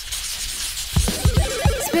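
A hissing whoosh transition sound effect, followed about a second in by background music with a steady drum beat.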